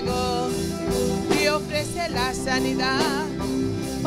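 Live gospel worship music from a small band of electric guitar, keyboard and drum kit, with a held keyboard chord underneath. A woman sings with a wide vibrato through the second half.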